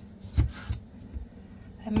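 Chef's knife cutting through sweet potato and knocking down onto a wooden cutting board: one sharp knock under half a second in, then a softer one just after.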